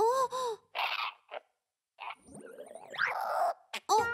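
An animated baby character's wordless vocal sounds: two short rising-and-falling calls at the start, then breathy gasps and sighs with a brief pause between them.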